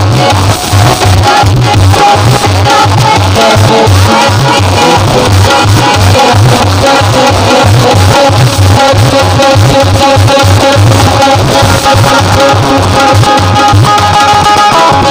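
Loud devotional music from a live bhajan ensemble: a steady, rhythmic drum beat under a held melody line.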